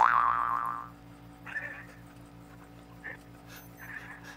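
A cartoon-style 'boing' sound effect rings out at the start and fades away over about a second, followed by faint, stifled giggling.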